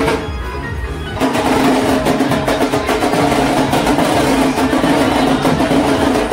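Procession drums beating a fast rhythm under loud music with held notes; the sound is a little softer for the first second, then picks up and stays loud.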